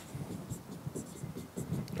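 Faint scratching and tapping of a pen on an interactive whiteboard's screen as short handwritten strokes are added.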